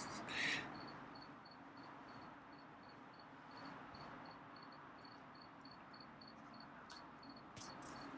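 A cricket chirping faintly and steadily, a regular run of short high chirps about three a second.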